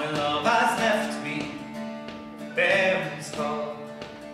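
Acoustic folk ensemble playing: fiddle and flute carrying the melody over bouzouki and acoustic guitar accompaniment, with the melody swelling twice.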